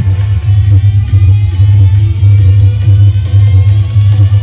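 Loud electronic music played through a high-power party speaker system, dominated by a deep, pulsing bass line.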